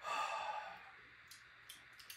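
A man breathing out audibly through the mouth after a sip of whiskey: one breathy sigh that fades over about a second, the exhale that lets the aftertaste come back across the palate. Two faint clicks follow near the end.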